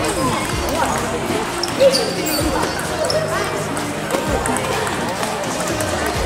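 Table tennis rally: the celluloid ball knocked back and forth by rubber-faced bats and bouncing on the table, a sharp knock under a second apart, the loudest about two seconds in, with shoes squeaking on the sports floor.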